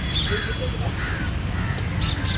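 Crows cawing a few times in short calls, over a steady low outdoor rumble of traffic.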